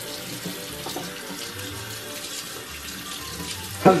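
Water running steadily from a bathroom sink tap.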